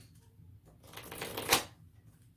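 A deck of angel oracle cards shuffled by hand: a quick run of card-edge flicks that builds about halfway through and ends in a sharp snap.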